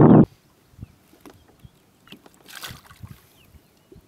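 Faint water lapping and small splashes against a boat hull, with one louder splash about two and a half seconds in, as of a released bass hitting the water. A loud rush of noise cuts off suddenly just at the start.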